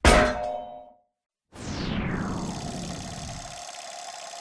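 Logo-sting sound effects: a loud metallic clang at the very start that rings out and stops within a second, then after a half-second gap a descending sweep that settles into a steady ringing tone.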